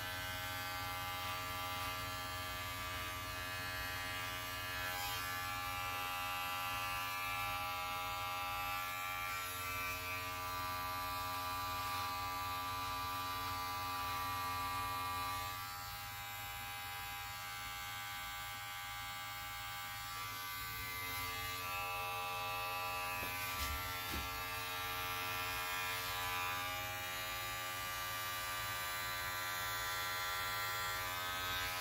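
Electric hair clipper running steadily with a constant motor buzz while cutting hair, its level dropping slightly about halfway through.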